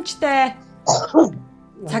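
A person gives a short cough or throat-clearing in two quick bursts about a second in, between bits of conversation.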